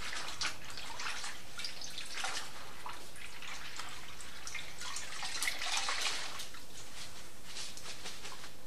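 Wet cotton cloth being lifted and squeezed out by hand over a metal bowl of rinse water, with irregular splashes and trickles of water falling back into the bowl.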